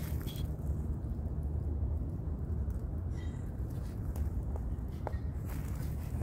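Steady low outdoor rumble on a handheld phone microphone, with a few faint ticks.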